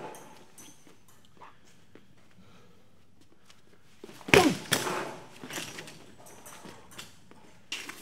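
A full-speed low-line Thai kick: the shin strikes the leg of an articulated training dummy hung on a heavy bag with one loud smack about four seconds in. Fainter knocks and rattles follow for a second or so.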